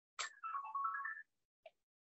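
A short electronic jingle: a click, then about a second of quick stepped tones that dip and climb again, like a phone ringtone or alert melody. A faint short blip follows near the end.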